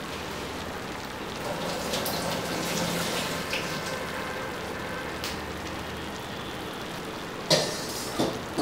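Chicken and par-boiled rice layered in a pan on the stove, sizzling steadily. A small click comes about five seconds in, and a louder utensil knock against the pan near the end.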